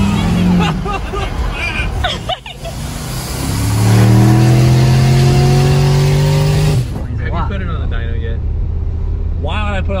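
Mercury Marauder's 4.6-litre 32-valve V8 at full throttle, heard from inside the cabin. After a brief drop about two seconds in, the engine note climbs steadily for about three seconds. It cuts off abruptly near seven seconds as the throttle closes, then the engine runs on at a lower steady note.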